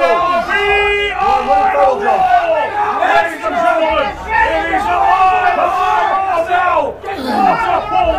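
Crowd of spectators yelling and shouting over one another. One voice holds a cry for about half a second near the start.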